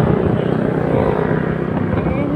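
Motorcycle on the move: loud, steady engine and wind noise on the phone's microphone.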